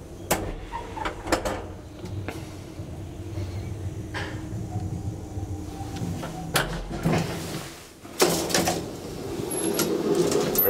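Old HVILAN elevator car travelling in its shaft with a steady low hum and occasional clicks and knocks. A loud clunk comes near the middle and a louder metallic rattle about eight seconds in as the car comes to a stop.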